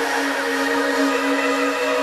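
Trance music in a beatless breakdown: sustained synth chords held over a hissing noise wash, with no kick drum or bass.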